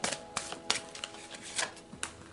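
Oracle cards being handled and laid down on a cloth-covered table: a few sharp card snaps and clicks.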